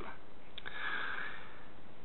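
A man drawing a long, steady breath in through his nose, heard as an even hiss.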